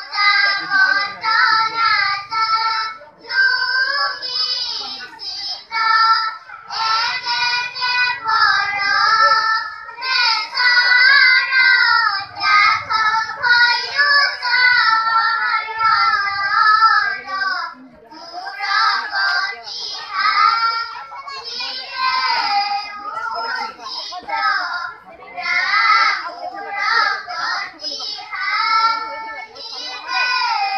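Children singing together, one sung phrase after another with short breaks between them.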